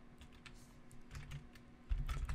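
Typing on a computer keyboard: scattered faint keystrokes, getting louder near the end.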